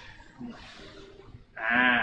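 A man's loud, drawn-out 'aah' near the end, after a quieter stretch of faint handling noise as the statue's shell pieces are fitted.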